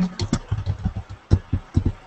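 Typing on a computer keyboard: an irregular run of keystroke clicks, each with a dull thump.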